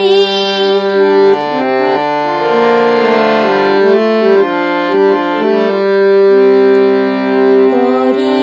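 Harmonium playing an instrumental interlude alone: a melody of steady held reed notes moving from pitch to pitch, with no voice over it.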